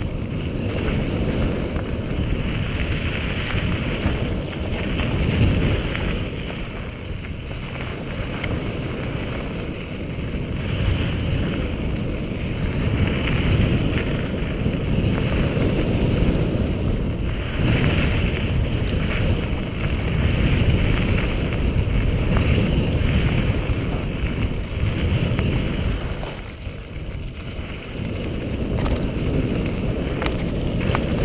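Wind buffeting a mountain biker's camera microphone at speed, mixed with tyres rolling over a dry dirt and gravel trail and the bike rattling over bumps. The rush eases for a moment near the end.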